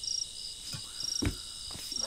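Crickets chirping in a steady night chorus of short high trills, with a few soft low knocks in the middle.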